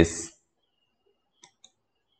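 Two faint, quick clicks, a fifth of a second apart, about one and a half seconds in; otherwise near silence.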